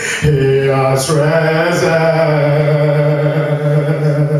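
A man singing a slow worship song into a microphone: a short phrase and a breath in the first second, then one long held note through the rest.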